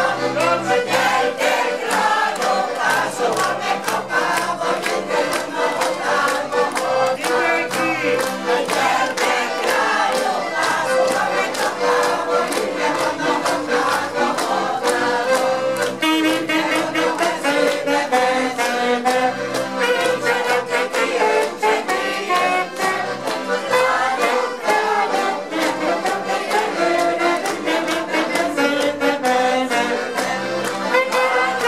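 Choir singing a Hungarian folk song (nóta) together, accompanied by two accordions playing a steady beat with bass notes and chords.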